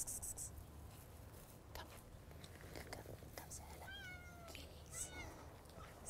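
A domestic cat meowing faintly twice near the end, two short calls about a second apart.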